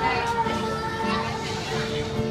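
A woman singing through a microphone with an acoustic guitar strummed along, over background chatter of voices.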